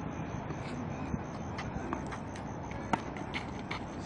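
Tennis rally on a clay court: a few sharp pops of racket striking ball, the loudest about three seconds in, over steady outdoor background noise.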